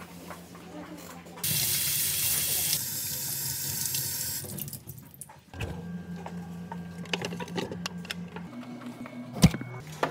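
A water tap running into a sink for about three seconds, starting and stopping abruptly, followed by light handling clatter and one sharp knock near the end.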